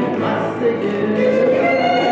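Choral singing in long, held notes that step to new pitches.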